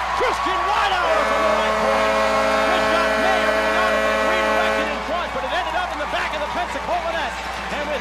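Arena goal horn sounding one long, steady blast, starting about a second in and stopping about five seconds in, over a cheering crowd, signalling a home-team goal.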